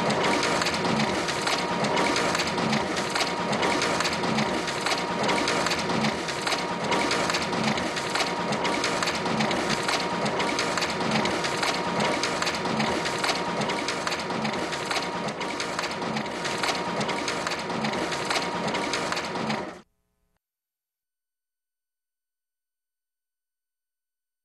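Office photocopier running, its paper-feed mechanism working in a regular repeating rhythm over a steady whine. It cuts off suddenly about 20 seconds in, leaving silence.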